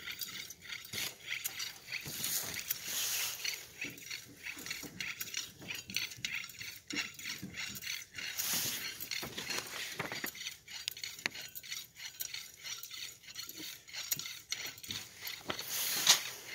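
Rustling and crunching of dry leaves, with many small scattered clicks and clinks, and two louder bursts of crunching about two and a half and eight and a half seconds in.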